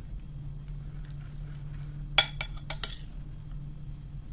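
Metal spoon clinking against a ceramic soup bowl: one sharp clink about halfway through, then a few lighter taps in quick succession, over a low steady hum.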